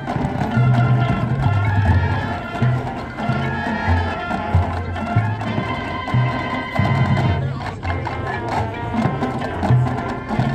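High school marching band playing its field show: held brass chords over a moving low bass line, with drums.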